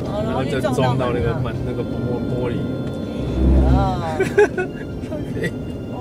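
Road and engine noise inside a moving car's cabin, with a low rumble swelling about three and a half seconds in and a sharp click just after.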